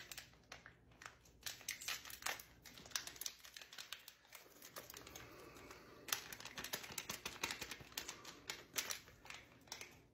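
Seasoning packet crinkling and tearing as it is opened, then handled as its corn masa is shaken out: a faint, irregular run of small crackles.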